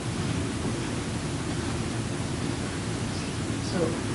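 Steady background hiss and low hum of the hall's room noise, even and unchanging, with one short spoken word near the end.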